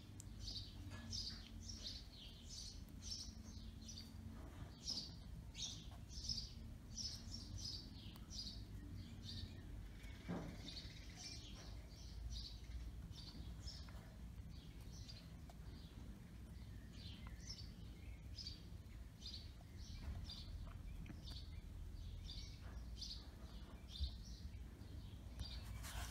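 Faint birds chirping in the background, many short high calls a second, over a low steady hum.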